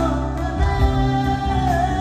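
Live band playing a song: a sustained, wavering lead melody over keyboards, electric and acoustic guitars and a steady beat.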